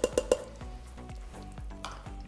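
A utensil knocking a few times against an Instant Pot's steel inner pot in the first half-second, then soft stirring and scraping of thick, creamy sauce, with a light sizzle from the sauté setting and two more faint knocks near the end.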